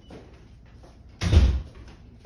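A single loud, heavy thump about a second in, over within half a second.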